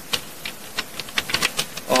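Computer keyboard typing: a quick, uneven run of key clicks as a word is typed.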